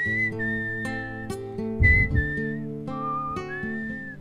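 Acoustic guitar strummed in steady chords while a melody is whistled over it in long, high held notes with short slides between them. About two seconds in there is a low thump, the loudest moment.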